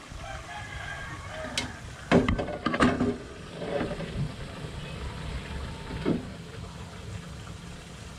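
A rooster crowing, with a few sharp knocks about two to three seconds in.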